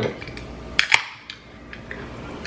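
Aluminium wine can's pull tab cracked open: two sharp clicks in quick succession about a second in.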